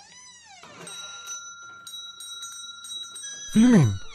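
A small bell rings with several steady tones. Near the end a man's voice gives a loud, short utterance that falls in pitch.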